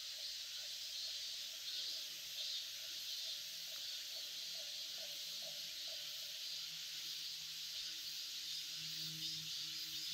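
Steady chorus of summer insects, a high-pitched buzzing that swells and fades in slow pulses. A faint low hum comes up in the last few seconds.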